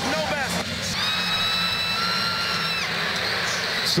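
Basketball arena crowd noise under the television commentary, with a steady, high, held tone starting about a second in and lasting close to two seconds before fading.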